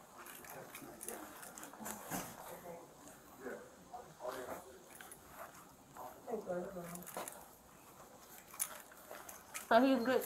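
Faint, muffled voices in short snatches, with scattered clicks.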